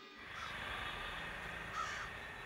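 A crow cawing twice, about a second and a half apart, the second call louder, over a steady background hiss.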